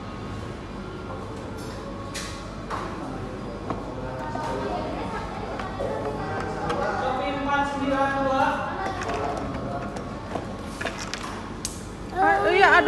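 Indistinct background voices with faint music, and a few light knocks or clicks.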